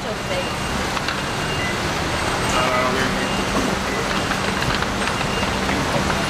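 Steady road traffic noise from a busy city street, with a steady low hum under it.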